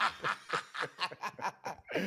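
Men laughing together, a run of short bursts of laughter at about four or five a second.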